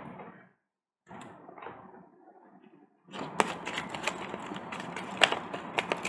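A deck of tarot cards being shuffled by hand: a faint rustle of cards about a second in, then from about three seconds in a steady run of quick card clicks and slaps.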